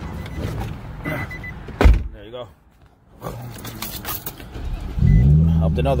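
A car door shuts with a single heavy thump about two seconds in. About five seconds in, the car's engine note rises to a steady low drone.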